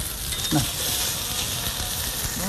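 Turkey burger patties sizzling as they fry in a non-stick pan, a steady frying hiss throughout. A brief voice sound comes about half a second in.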